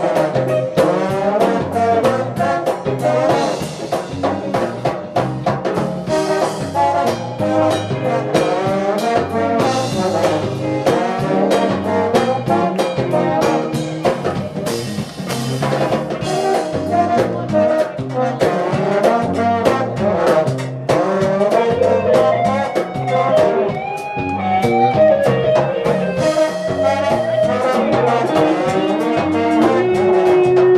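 Live New Orleans brass band music led by several trombones playing together over a steady drum-kit beat, with no singing.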